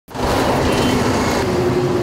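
Road traffic: a motor vehicle driving past close by, with a steady engine and road noise that starts abruptly at the outset.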